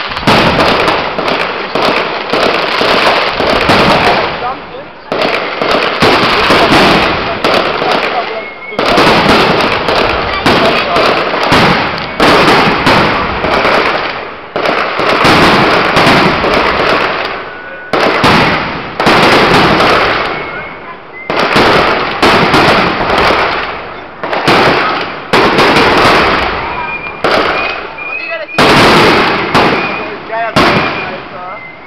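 Aerial fireworks display: a dense, loud barrage of shell bursts and crackle, one bang after another. It swells and eases every two to three seconds.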